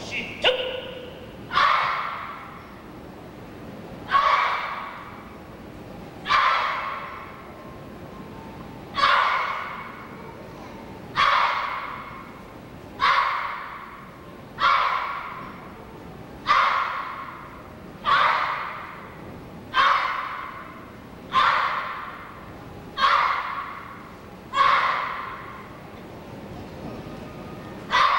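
A children's taekwondo team shouting sharp kihap shouts in unison, about one every two seconds, each shout echoing briefly in the hall.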